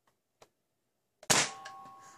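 A faint click, then a single sharp shot about a second and a quarter in as the Nerf Hyper Impulse-40 blaster fires a rubber Hyper round through a chronograph, followed by a steady electronic beep of about a second as the chronograph registers the shot.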